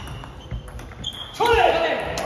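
Table tennis rally: a celluloid-type ball clicking off bats and the table, with a reverberant hall sound, for about a second and a half. Then a player gives a loud shout that falls in pitch as the point ends.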